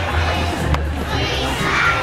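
A group of young children singing loudly together, close to shouting, with musical accompaniment.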